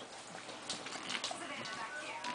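Shih Tzu puppies' claws and paws tapping and scrabbling on a hardwood floor as they play-wrestle: irregular light clicks and patters.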